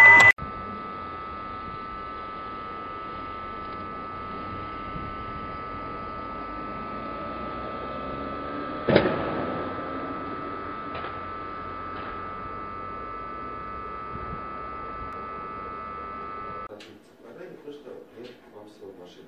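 A steady electrical whine with a faint hiss from a street surveillance camera's audio. About halfway through it is broken by one loud crash, a car impact in a fatal collision involving a Daewoo Lanos, followed by two fainter knocks. The whine cuts off shortly before the end.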